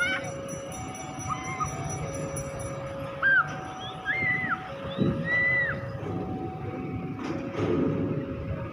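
An electronic two-tone warning alarm, alternating slowly between a lower and a higher steady tone, each held a little over a second, with short chirps over it.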